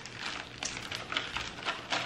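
Clear plastic zip-top bag crinkling as it is handled, a run of irregular short crackles.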